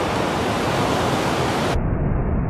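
Steady wash of surf breaking on the shore, an even rushing noise with no tones in it. About three-quarters of the way through it cuts abruptly to a duller, muffled version with a heavier low rumble.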